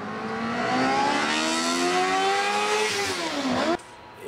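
A small single-seat race car's engine accelerating, its note climbing steadily as it comes closer, then dropping sharply in pitch as it passes. The sound cuts off suddenly just before the end.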